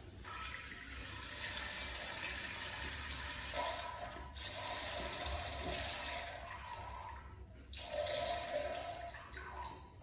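Water running in a tiled bathroom, a steady hiss that drops out briefly about four seconds in and again near eight seconds.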